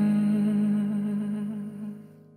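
The end of a Vietnamese pop ballad: the song's final held note over a sustained low chord, fading out steadily toward silence.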